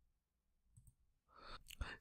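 Near silence, then near the end a faint short rustle and a single sharp click of a computer mouse.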